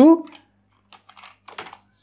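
Computer keyboard being typed on: a few quick, faint keystrokes in two or three small clusters, starting about a second in.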